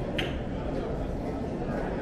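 Busy airport concourse ambience: indistinct chatter of a walking crowd over a steady low rumble, with one short, high clink about a fifth of a second in.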